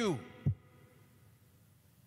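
A man's voice trails off on one word at the start, then a single short low thump about half a second in, followed by quiet room tone in a church.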